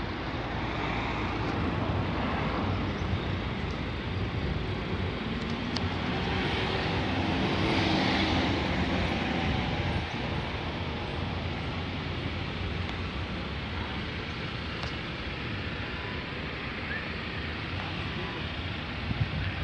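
Steady road traffic noise with a low rumble, swelling for a few seconds near the middle as a vehicle goes by.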